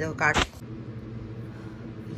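A short sharp click, then a steady low hum.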